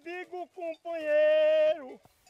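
A man singing unaccompanied, high in his voice: a few short phrases, then one long, steady held note that drops away near the end. This is a cattle rancher's impromptu song.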